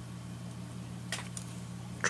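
Steady low hum with two faint snips about a second in, from scissors trimming strands of Krystal Flash on a tied fly.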